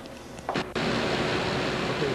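Steady running noise of a continuous film processing machine: an even hiss with a faint steady hum. It starts abruptly about three-quarters of a second in, after quieter room sound and a brief knock.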